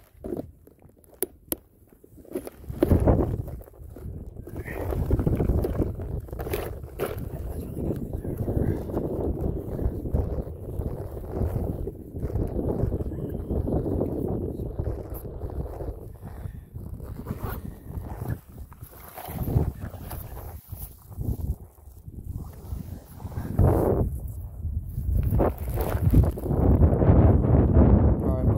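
Wind rumbling on a phone microphone with handling and rustling noise, uneven and gusty, with a few sharp clicks in the first two seconds.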